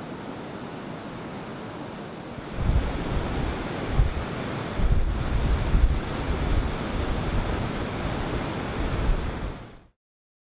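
Sea surf breaking on the beach below the cliffs, a steady wash of noise. From about a quarter of the way in, wind buffets the microphone in gusts that are louder than the surf, and the sound fades out just before the end.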